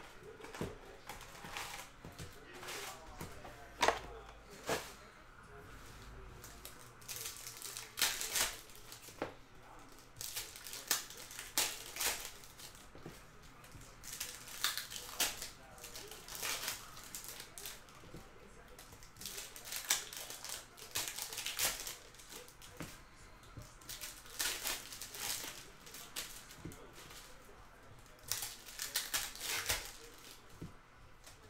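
Foil hockey card pack wrappers being torn open and crinkled, in short crackling bursts every few seconds, with cards handled between them.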